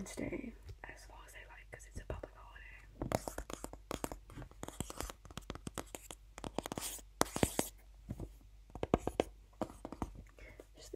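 Fingertips and nails tapping and scratching on a hard object close to the microphone: many quick taps, with brief scratchy rubs about three seconds in and again near seven seconds. Soft whispering comes in during the first couple of seconds.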